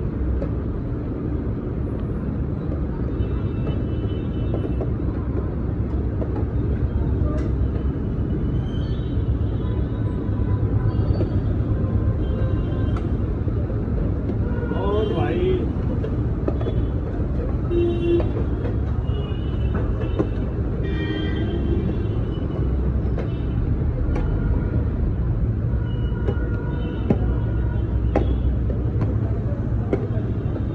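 Busy street ambience: a steady low rumble with faint background voices and a few light clicks of metal.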